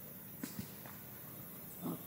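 A monkey gives one short, low grunt near the end, after a couple of faint clicks.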